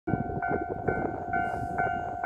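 Railway level-crossing warning bell ringing, a pitched electronic ding repeating about twice a second, over a low rumble.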